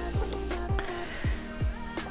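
Background music with a steady beat: a deep kick drum that drops in pitch, about twice a second, under held notes.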